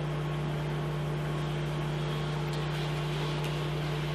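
Steady low hum with a constant hiss and no change in level: the room tone of a lecture room.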